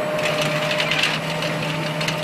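John Deere tractor running steadily as it pulls a multi-row planter that lays biodegradable film over the seed rows as the seed goes in: a steady engine hum with two held tones under a rattly, hissing mechanical noise.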